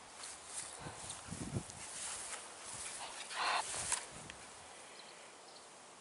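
Faint rustling of a young Staffordshire Bull Terrier puppy moving through grass, with small knocks and one short breathy puff about three and a half seconds in.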